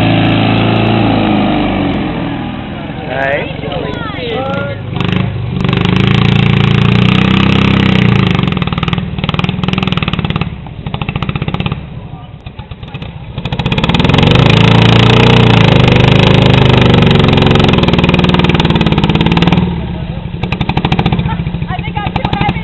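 A vehicle engine running close by and being revved up and down, loudest in two long stretches with a dip between them.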